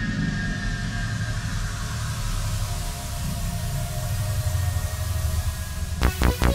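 Intro of an 80s-style synth cover song: a low rumbling drone under a swelling hiss, with faint held high tones fading away, building toward the beat.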